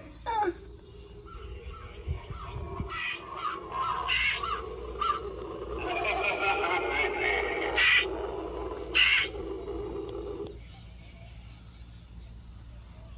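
Spooky sound effects from Halloween animatronic props: a wordless voice-like sound with squawking, bird-like calls, and a couple of sharp bursts near the end.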